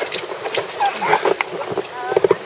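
Water splashing in repeated short bursts as spray is thrown about, with people's voices calling out over it.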